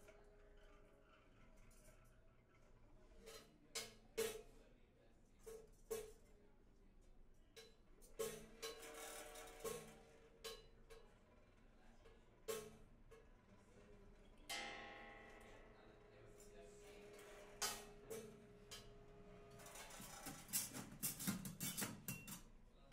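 Sparse free-improvised percussion: scattered single strikes on small percussion instruments, each ringing briefly, with one longer ringing stroke about midway. The hits come thicker and faster near the end.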